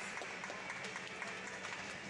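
Indoor arena crowd noise with scattered hand clapping after a gymnastics floor routine.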